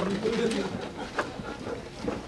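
A person's low voice held on one pitch, wavering slightly, fading out about a second in, then faint background noise with a small click.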